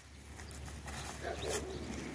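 Faint sounds of goats grazing close by: soft tearing and crunching of grass, with a few small clicks.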